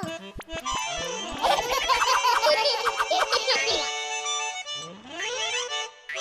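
Playful cartoon music and sound effects: a run of quick clicks, then sliding tones rising and falling around a busy burst of bright notes in the middle, ending on a rising slide.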